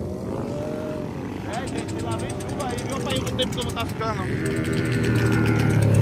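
Motorcycle engines revving up and down across the runway as riders pull wheelies. A nearer motorcycle engine runs steadily and grows louder over the last second or two.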